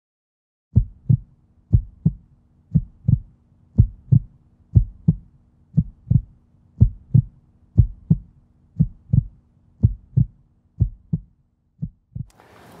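Heartbeat sound effect: paired thumps, lub-dub, about once a second, over a faint steady low hum, starting just under a second in.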